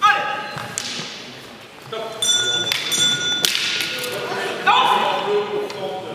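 Wooden fighting canes striking in a canne de combat bout in a large gymnasium: sharp knocks and thuds, mixed with short shouts and voices. A brief ringing tone comes about two seconds in.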